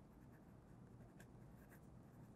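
Faint scratching of a pen on drawing paper as a signature is written in a few short strokes.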